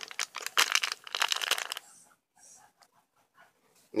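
Foil-and-plastic sachet of powdered poultry supplement crinkling as it is handled, a dense crackle for the first couple of seconds, then only a few faint ticks.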